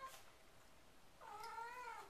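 A cat's faint, drawn-out meow that wavers gently in pitch, starting a little past halfway through.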